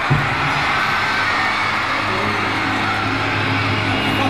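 Audience-recorded arena crowd noise between songs at a rock concert, with a low steady drone from the stage's amplified instruments building about a second in. A single thump at the very start.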